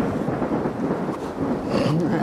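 Film soundtrack: a loud, steady rumble with a dense haze of noise and no clear words.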